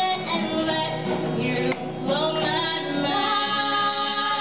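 Female voices singing a pop song live to an acoustic guitar accompaniment.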